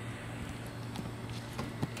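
Quiet outdoor background noise with a steady low hum and a couple of soft taps near the end.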